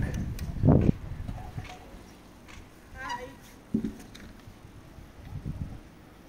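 Quiet street ambience with a few soft low thumps, the loudest just under a second in, and a brief faint voice about three seconds in.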